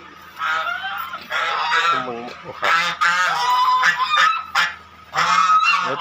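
A run of about five loud, pitched animal calls, each lasting under a second.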